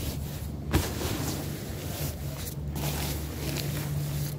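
Used jackets being handled and shifted in a clothing bin, fabric rustling over a steady low hum, with one short knock about three-quarters of a second in.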